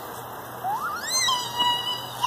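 A young girl's high-pitched squeal: it slides sharply upward about half a second in, then holds on one high note for most of a second.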